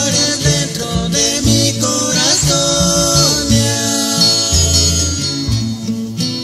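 Recorded pirékua, a Purépecha folk song, played by a string band. Guitars and a deep bass keep a steady rhythm under a gliding melody line.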